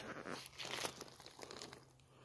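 Plastic tarp rustling and crinkling faintly as it is pulled back off a wood-chip compost pile, in short irregular bursts that fade out towards the end.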